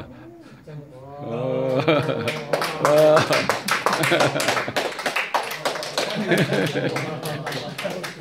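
A small audience applauding, the claps starting about two seconds in and thinning toward the end, with voices calling out in the first few seconds.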